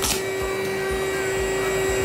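Electric air-mattress pump running with a steady motor hum while the mattress inflates, with a brief handling knock at the start.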